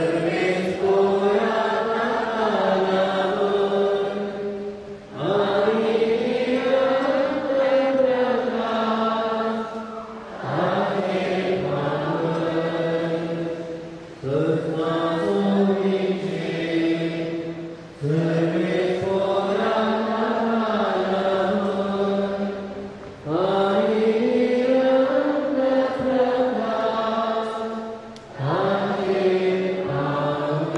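Voices singing a slow, chant-like hymn in phrases of about four to five seconds, with a short break between each phrase.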